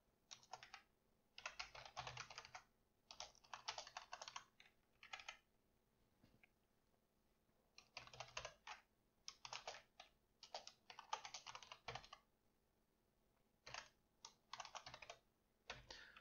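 Quiet typing on a computer keyboard: runs of rapid key clicks in bursts, broken by pauses of a second or two.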